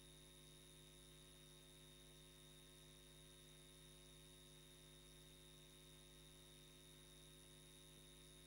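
Near silence: a faint, steady electrical hum with a few constant tones on the audio line, unchanging throughout.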